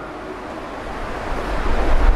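Faint hiss, then a low rumble building over the second half as a hand takes hold of a stem microphone: microphone handling noise.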